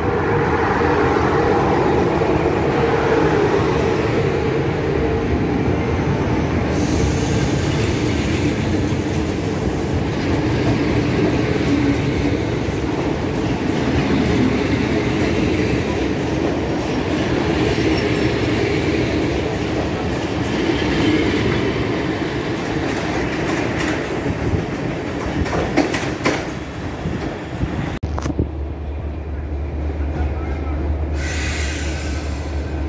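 A class 41 (060-EA) electric locomotive and its passenger coaches rolling past at close range, a loud steady rumble of wheels on rail. A run of sharp clicks near the end marks the last wheels crossing the rail joints, then the noise falls away.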